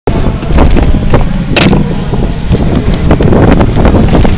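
Wind buffeting the camera's microphone: a loud, uneven low rumble, with a sharp click about a second and a half in.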